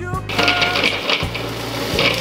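White KitchenAid food processor running, a steady motor-and-blade whirr that starts about a third of a second in, with background music underneath.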